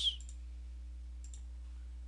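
Two faint computer mouse clicks, each a quick double tick, about a third of a second and about a second and a third in, over a steady low electrical hum.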